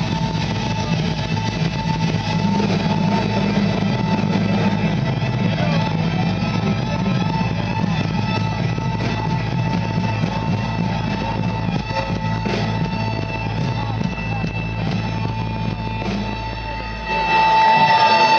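Folk-metal band playing live through a large PA, heard from the audience: continuous music with electric guitar and steady held notes over a heavy low end, growing suddenly louder with a strong sustained note about a second before the end.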